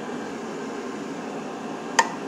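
A steady mechanical hum and hiss, like a running fan, with one short sharp click at the very end.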